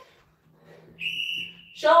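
Interval timer app on a tablet sounding one steady high beep, about three-quarters of a second long, about a second in: the signal that the work interval begins.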